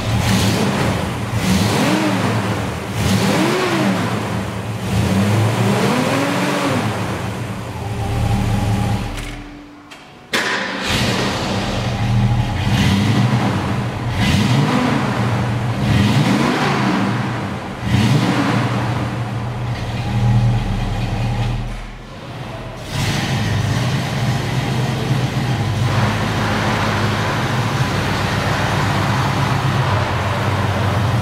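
1966 Ford Mustang's engine idling with repeated throttle blips, the pitch rising and falling again every second or two between steady stretches of idle.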